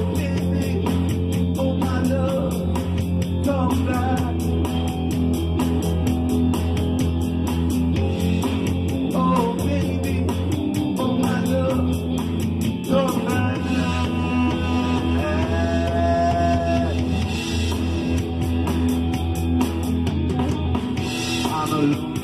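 Instrumental rock passage from a small live band: guitars and bass playing together over a fast, even ticking beat. A lead melody weaves over it and holds one long note about three quarters of the way through.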